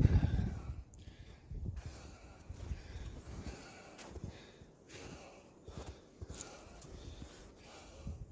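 A person breathing and stepping through deep snow, louder in the first second, then faint and irregular.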